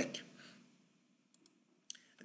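Near silence with two quick faint clicks a little past halfway and a sharper click near the end: a computer mouse clicking to advance to the next lecture slide.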